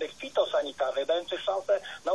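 Continuous speech with a narrow, radio-like sound.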